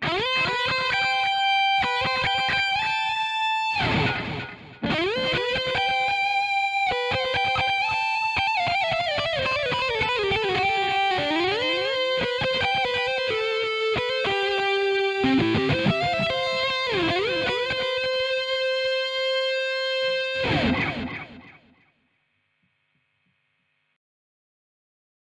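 Grover Jackson Soloist electric guitar with Seymour Duncan humbuckers playing a distorted solo: quick runs, a falling run and held notes, on the bridge pickup first and on the neck pickup later. There is a brief dip about four seconds in. A long held note near the end gives way to a noisy sweep, and the guitar fades out a couple of seconds before the end.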